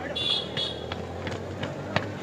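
Footsteps of several men jogging across a footbridge deck, sharp steps about three a second, over the low steady running of a motorcycle engine. A brief high-pitched tone sounds near the start.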